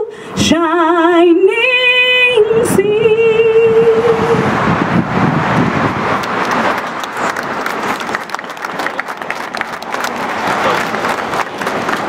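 A solo singer holds the long final note of a song with a wavering vibrato, ending about four and a half seconds in; the crowd then breaks into sustained applause.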